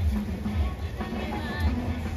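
A crowd of football supporters singing a chant together, with a drum beating steadily underneath.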